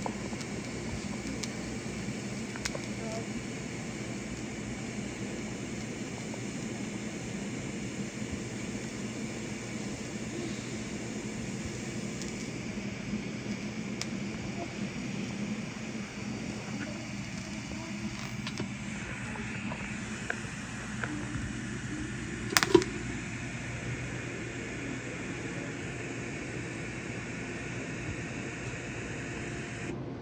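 TIG welding arc on stainless steel, a steady buzzing hum, with one sharp click about three-quarters of the way through.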